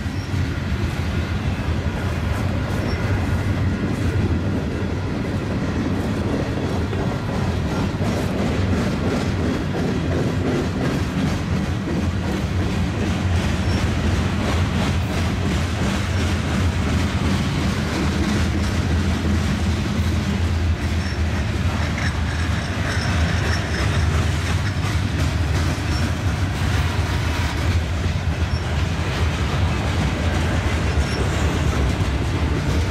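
Union Pacific mixed freight train's covered hoppers and boxcars rolling past. It makes a steady rumble of steel wheels on rail, with repeated clicks as the wheels cross rail joints.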